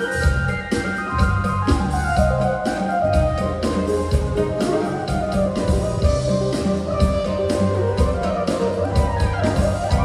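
Live band playing an instrumental passage without vocals: drum kit keeping a steady beat under bass and an electronic keyboard carrying the melody.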